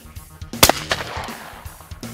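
Over-and-under shotgun fired once at a clay target, a single sharp report about half a second in with a short ringing tail.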